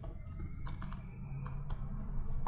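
Computer keyboard keys tapped in a quick run of about half a dozen clicks, typing a division into a calculator, over a low steady hum.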